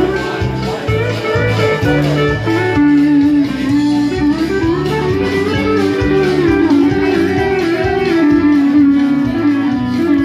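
Emmons pedal steel guitar taking an instrumental break, its bar sliding between notes in smooth pitch glides, over a live band with a pulsing bass line.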